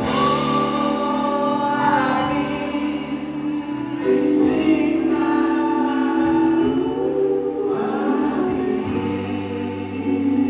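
A live band's song: sung lead vocal with harmony voices, held notes over electric guitars.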